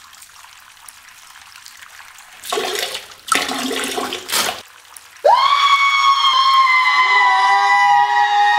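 Liquid splashing into a toilet bowl in three short spurts, then a loud held high note with many overtones that slides up at its start and is joined by a lower held note about two seconds later.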